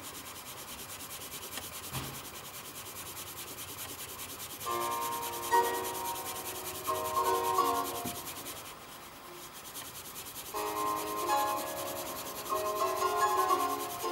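Pencil shading on paper in rapid back-and-forth strokes, a steady rubbing.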